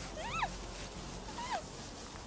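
Two short, high-pitched, muffled cries that rise and then fall, from a person bound inside a rope-tied sack and struggling to get free.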